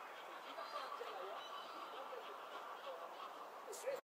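Seagulls calling faintly in the background, short squabbling calls scattered over a steady murmur of city noise.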